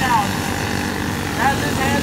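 Engines of several small caged dirt karts running together at race speed in a steady drone, with a race announcer's voice over it.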